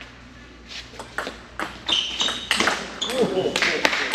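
Table tennis rally: the celluloid ball clicks sharply off the paddles and the table, starting about a second in and repeating roughly every half second. A short vocal shout comes near the end.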